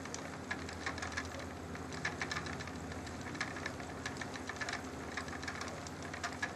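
Wooden spinning wheel running steadily as yarn is spun: a low, even whir from the turning flyer and bobbin, with light, irregular clicking.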